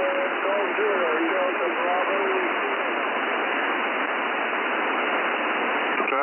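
Shortwave single-sideband radio on the 40 m amateur band, received on a software-defined radio in lower sideband: a weak voice barely above heavy static hiss for the first two and a half seconds, then the hiss alone. The audio is narrow and telephone-like, with no deep bass or high treble.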